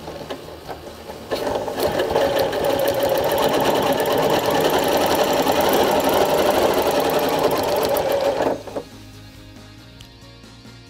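Janome Continental M8 sewing machine stitching free-motion ruler work under its Accurate Stitch Regulator, starting about a second in, running at an even speed for about seven seconds, then stopping.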